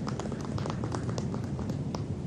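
Steady low rumble of outdoor background noise, with a scatter of faint, light clicks and taps.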